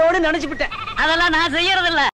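A woman laughing hard in two long, wavering peals with a short break between them.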